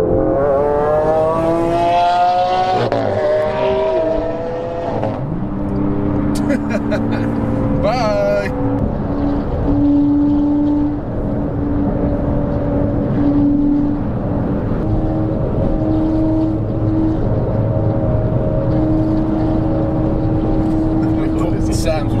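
Car engine accelerating, its pitch rising for the first few seconds, then settling into a steady drone at motorway cruising speed over tyre and road noise.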